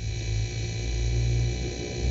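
A steady low hum with a faint hiss.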